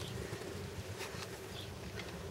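Faint buzzing of a flying insect.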